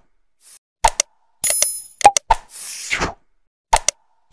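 Looping sound effects of an animated subscribe button: clusters of sharp mouse-style clicks, a short bright bell ring and a whoosh, the set repeating about every two and a half seconds.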